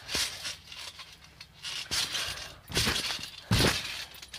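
Trampoline mat and springs thudding and rattling under a jumper: several irregular hits, the loudest and deepest about three and a half seconds in.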